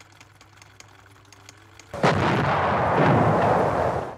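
Battle sound of explosions and gunfire, from the attack on Pearl Harbor, starting suddenly about halfway through and running loud and dense after a quiet start.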